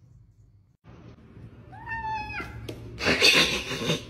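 A cat meows once about halfway through, a single call that rises and then falls. Near the end comes a louder, harsh burst of noise as two tabby cats fight.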